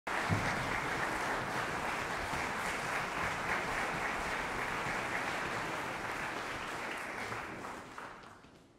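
Concert audience applauding steadily, the applause dying away near the end.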